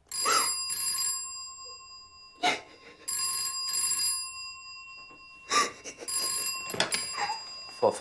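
A landline telephone's bell ringing in pairs of short rings, British double-ring style. The double ring comes three times, about every three seconds, until the phone is picked up.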